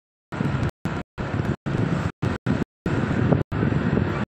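Steady engine and road rumble inside a car driving slowly, chopped by repeated abrupt dropouts to dead silence every half second or so, as if the recording is glitching.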